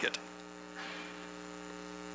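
Steady electrical mains hum in the audio chain, a low buzz of several even tones, with a faint soft hiss about a second in.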